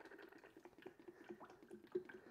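Liquid wheel cleaner pouring in a thin stream from a plastic jug into a plastic pump-sprayer bottle: a faint trickle with small irregular drip sounds.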